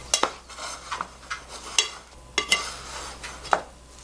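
White plastic rice paddle stirring freshly cooked rice in a rice cooker's metal inner pot: a run of irregular scrapes and sharp knocks of the paddle against the pot.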